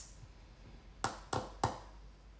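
Three short, sharp clicks about a third of a second apart, starting about a second in, over faint room tone.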